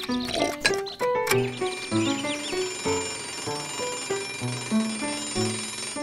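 Chamber music score of violin, cello and piano, with a bell starting to ring over it about a second in and ringing steadily from then on.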